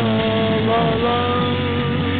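Rock song instrumental passage: distorted electric guitar holding long notes that slide and step between pitches, over a steady bass line.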